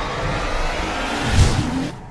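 Sound design for an animated logo intro: a dense whooshing swell over a low rumble that peaks in a deep low hit about one and a half seconds in, then drops away near the end.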